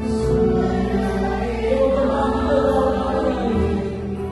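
Congregation singing a worship song together, many voices holding long notes over musical backing.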